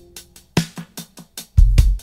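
Background music with a drum-kit beat: a quick run of sharp snare and kick hits, with a heavy bass hit near the end.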